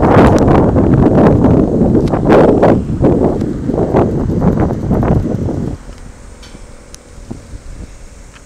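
Wind buffeting the microphone: a loud, gusty rumble that drops away suddenly about six seconds in, leaving only faint outdoor background.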